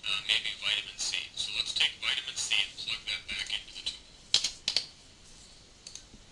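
Thin, tinny speech with almost no low end, a tutorial video's narration playing back through computer speakers. Two sharp clicks come about four and a half seconds in.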